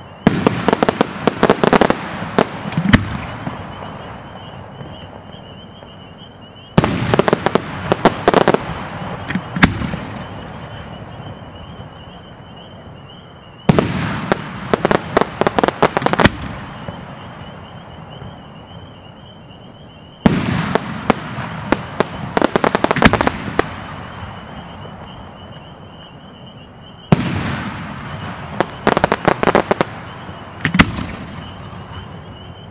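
6-inch crossette aerial display shells bursting, five in turn about seven seconds apart. Each burst is followed by a rapid string of sharp cracks for two to three seconds as the stars split.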